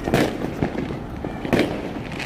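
Fireworks going off: two loud bangs about a second and a half apart, with smaller pops and crackles between them.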